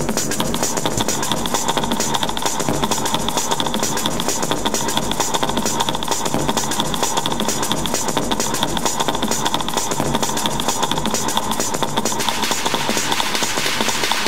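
Techno DJ mix: a dense, steady electronic groove over deep bass pulses, with a high tone layer that drops away about twelve seconds in.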